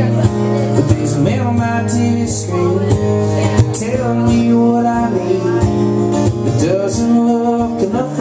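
Acoustic guitar strummed steadily in a country-style song, with a man singing over it at times.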